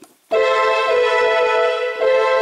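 Casio CTK-4200 home keyboard playing a layered string patch with chorus and reverb: one chord struck about a third of a second in and held steady.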